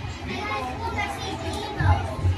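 Children's voices talking and calling out, over a steady low hum.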